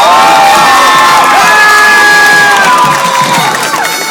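Stadium crowd cheering loudly, many high voices whooping and screaming together, easing slightly near the end.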